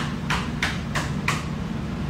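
Stifled, breathy laughter: a run of short puffs about three a second that stops a little past a second in, over a steady low hum.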